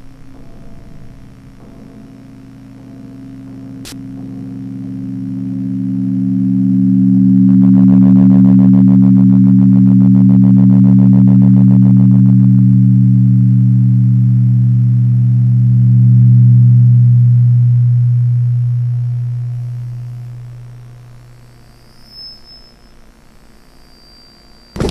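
Electronic drone in an ambient experimental track: a low, steady chord of held tones swells in over several seconds, stays loud, then fades out near the end. A buzzy, rapidly pulsing layer sits on top for a few seconds in the middle, and a single click sounds about four seconds in.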